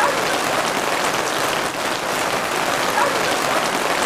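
Rain falling on the plastic-film cover of a hoop house: a steady, even patter with faint ticks of single drops.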